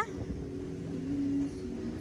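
Outdoor fairground background: a steady low hum and noise with faint tones, and no single event standing out.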